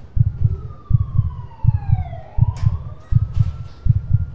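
Heartbeat sound effect: heavy, even lub-dub double thumps, about one beat every two-thirds of a second. Partway through, a siren-like tone glides down in pitch, then rises again and holds.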